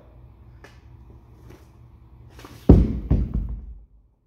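A heavy concrete atlas stone dropped onto the gym floor: one loud thud about two-thirds of the way in, then a second, smaller thud as it bounces and settles. A few faint knocks and scuffs come before it.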